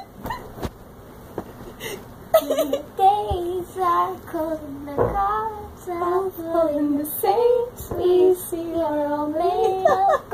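Girl singing a slow melody in a high, thin voice altered by inhaled helium, with several long held notes from about two seconds in.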